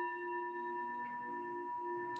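Singing bowl ringing: a bell-like sound comes in suddenly at the start, then several clear tones hold steadily, the highest ring the strongest.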